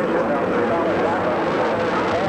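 Space Shuttle Columbia's main engines and solid rocket boosters at ignition and liftoff: a steady, loud rocket noise, with indistinct voices over it.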